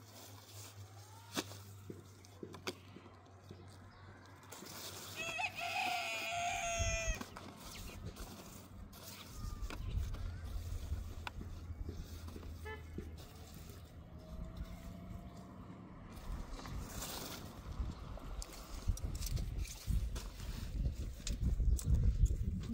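A rooster crows once, a single pitched call of about two seconds, about five seconds in, with a low rumble underneath from then on.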